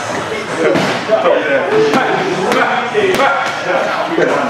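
Boxing gloves striking a wall-mounted uppercut bag: a few sharp smacks in the second half, the loudest about three seconds in, over voices in the gym.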